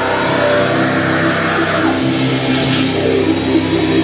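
Heavy metal band playing live, with distorted guitar and bass holding chords that change every second or so.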